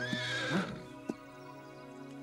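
A horse whinnying briefly in the first moments, over steady background music, with a single sharp knock about a second in.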